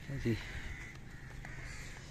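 Crows cawing in the background, with a brief human voice sound just after the start.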